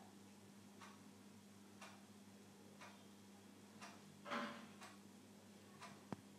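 Near silence: room tone with a low steady hum and faint ticks about once a second, and a brief soft noise about four seconds in.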